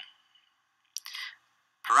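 Two short clicks, one at the start and one about a second in. The second is followed by a brief breathy hiss, and then a man starts speaking near the end.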